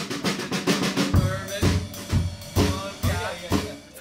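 Drum kit playing a busy pattern of rapid snare, bass drum and cymbal hits, with other pitched band parts sounding between the hits.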